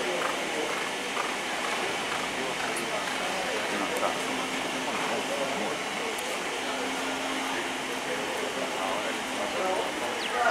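Indistinct voices talking over a steady background of noise.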